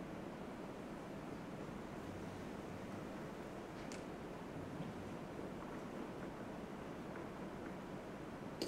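Faint, steady room tone of a lecture hall with a soft hiss, and one small click about four seconds in.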